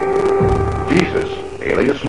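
A steady held drone with a low rumble beneath it in a film soundtrack, following an explosion; it fades out about a second and a half in, and a voice comes in near the end.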